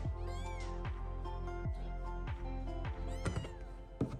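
Young British Shorthair kittens mewing, thin high cries about half a second in and again near the end, while being patted and moved about; these are the distress cries meant to call the mother cat out of the birthing box. Background music with a steady beat plays underneath.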